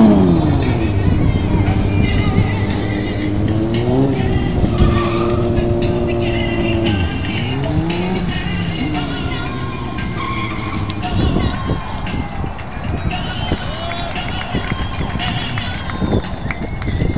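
Sport motorcycle engines revving during stunt riding. The engine note climbs and falls several times and is held high for a few seconds in the middle.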